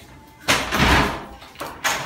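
An interior door being opened: a loud thud about half a second in, then a sharper click near the end.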